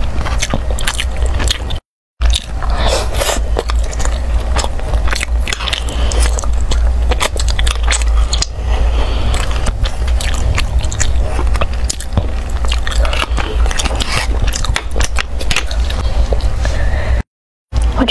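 Metal spoon scraping and clicking against the inside of a small metal tin as stiff food is dug out, which she finds hard to scoop. The sound is loud and ear-grating, with irregular clicks, and is cut by two brief silent gaps, one about two seconds in and one near the end.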